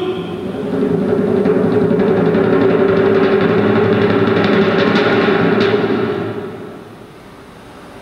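Suspense drum roll, held steady and then fading away about six seconds in, building tension before the winner is announced.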